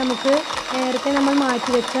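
Electric hand mixer running steadily, its beaters whipping cream in a glass bowl, with a thin high motor whine over the churning.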